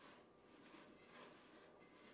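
Near silence, with faint soft rubbing as hands work oiled, seasoned potato pieces in a cast iron skillet.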